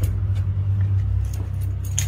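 Low rumble of a handheld phone microphone being moved about while walking, with light jingling clicks of keys.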